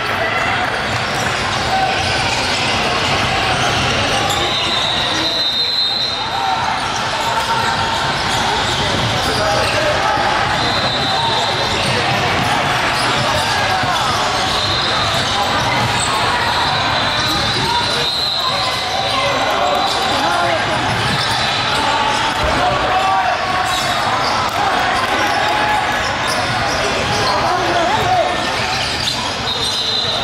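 Live basketball game in an echoing gym: the ball bouncing on the hardwood court, with indistinct voices of players and spectators and several brief high squeaks.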